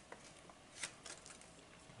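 Faint handling sounds: a few soft clicks and light rustling of a collector card and its plastic protective holder being handled.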